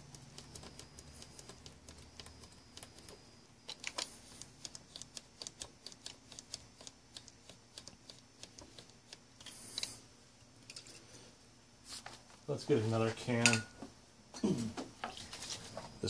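Loudness and muting switches of a vintage Onkyo TX-26 stereo receiver being clicked back and forth over and over, a run of light, sharp clicks a few per second, to work freshly sprayed DeoxIT contact cleaner into the contacts.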